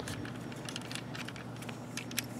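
Faint, scattered clicks and light rattling of a transforming plastic action figure's parts as its arm is worked against the hip skirt, over a steady low hum.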